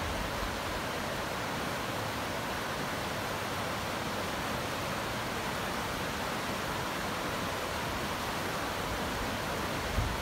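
A creek in flash flood, its muddy floodwater rushing and churning with a steady, unbroken sound.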